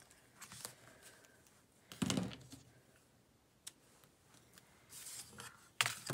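Quiet, scattered handling sounds of quilting tools on a cutting mat: a rotary cutter and acrylic ruler being worked against fabric, with a soft knock about two seconds in and fabric being shifted near the end.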